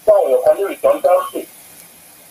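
Speech: a person talking for about a second and a half, then a pause.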